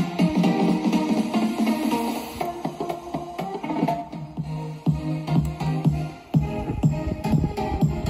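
Instrumental music with a steady beat and bass line, played through a pair of Realistic Minimus 77 metal-cabinet bookshelf speakers and heard in the room through a phone's microphone.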